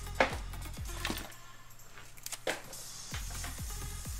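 Background electronic dance music with a steady kick beat, which drops out for about two seconds in the middle. Over it come a few sharp clicks and knocks of trading card packs being handled on a tabletop, the loudest just after the start.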